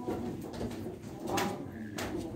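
Low cooing of a dove, with a short knock about one and a half seconds in.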